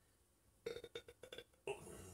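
A man burping: one belch of just under a second, made of rapid pulses.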